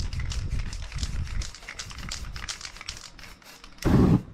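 Aerosol spray-paint can hissing in quick short bursts, about five a second, as paint is sprayed on poster board. The bursts fade, and just before the end a sudden loud whoosh of flame from the ignited paint spray.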